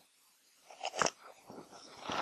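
After a brief dead silence, a few short crunching scrapes of rock on gravel and sand, the sharpest about a second in, as a rock is pried up from loose creek-bed gravel.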